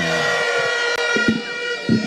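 A long, steady, siren-like tone with many overtones, holding one pitch; underneath, a lower tone glides downward and fades within the first second.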